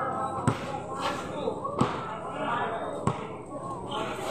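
Basketball bouncing on a concrete court: three sharp, evenly spaced impacts.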